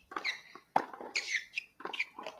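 Court sounds from a hard-court tennis match: a few high squeaks, typical of shoe soles on the court surface, and about three sharp knocks spread over the two seconds.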